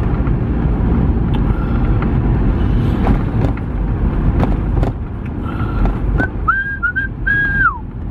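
Van driving on the road, heard from inside the cab: a steady low rumble of engine and tyres with a few light knocks. Near the end a high whistling sound comes in as a few held notes, the last one sliding down.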